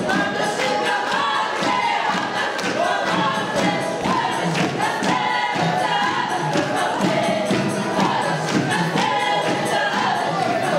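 A folk choir singing a Ukrainian folk song in full voice, with a regular percussive beat under the voices.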